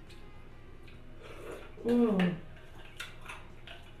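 A woman's appreciative 'mm' hum as she tastes a dessert, about two seconds in, falling in pitch at the end. Faint light clicks come before and after it.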